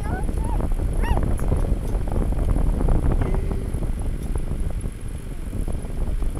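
A vehicle driving on a paved road, heard from on board: a steady low rumble of engine and tyres with small rattles, and a few short high-pitched sounds about a second in.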